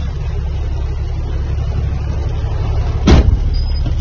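Steady low engine and road rumble inside a moving truck's cab, with one sharp knock about three seconds in.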